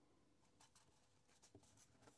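Faint rustling and light clicking of a deck of tarot cards being shuffled in the hands, starting about half a second in.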